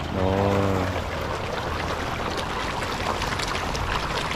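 Steady splashing and churning of water from a dense crowd of carp and tilapia thrashing at the surface for thrown food.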